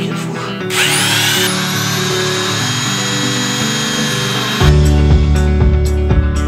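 Handheld power file (narrow belt sander) spinning up about a second in with a rising whine, running steadily for about four seconds, then stopping. It is sanding paint off a metal fitting down to bare metal. Background music plays throughout.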